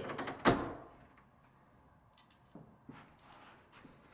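A single sharp thump about half a second in, then a few faint knocks and taps, from a person moving about and handling the cardboard-and-wood target stand.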